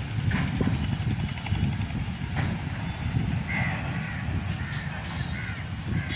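A bird calling several times in short calls, spaced through the second half, over a steady low rumble.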